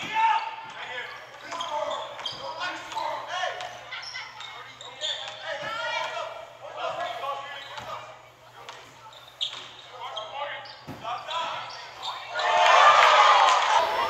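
Basketball game in a gymnasium: a ball bouncing on the hardwood court and sneakers moving under the chatter of spectators, all echoing around the hall. The voices swell loudly near the end.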